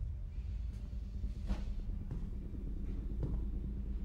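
A low, steady rumbling drone, typical of a film-score underscore, with a few faint, brief rustles over it.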